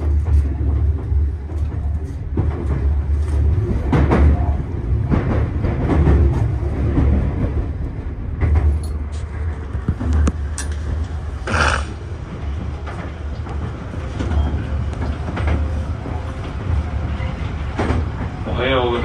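Tobu 50000 series electric train running at speed, heard from inside the driver's cab: a steady low rumble of wheels on rail with frequent short clicks, and a brief sharper noise about two-thirds of the way through.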